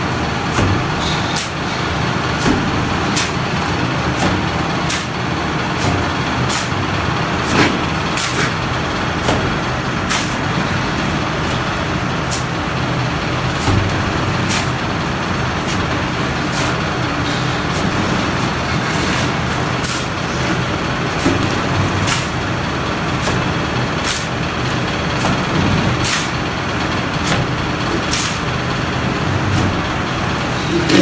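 Steel trowel scooping cement mortar off the floor and flinging it onto a brick wall, a short sharp scrape or slap about once a second, over a loud steady background hum.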